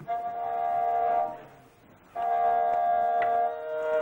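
Kobyz, the Kazakh bowed instrument with horsehair strings, playing two long bowed notes: the first lasts about a second, the second starts about two seconds in and steps down in pitch partway through.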